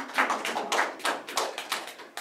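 A few people clapping in a quick, irregular patter that dies away at the end.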